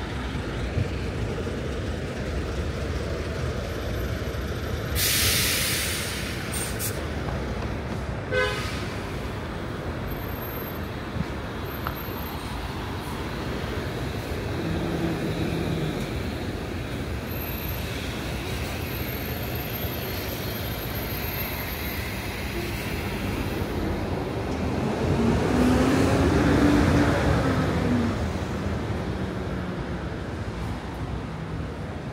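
City street traffic: a steady noise of passing vehicles, with a short sharp hiss about five seconds in. Near the end a heavy vehicle passes, its engine note rising and then falling in pitch, and this is the loudest part.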